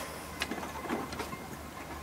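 Low, steady hum of a small motor running, with a few faint ticks.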